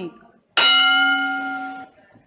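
A single electronic chime from a parliamentary electronic voting system, starting about half a second in and held for over a second as it fades slightly. It signals that the electronic vote has opened.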